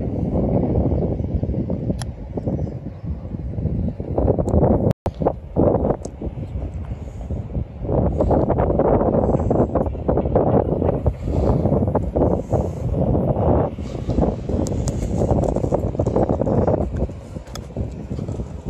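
Wind buffeting the microphone, a gusty low rumble that rises and falls. It drops out completely for a split second about five seconds in.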